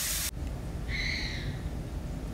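A hiss cuts off suddenly a moment in, then one short, high-pitched call, slightly falling and about half a second long, over a low rumble.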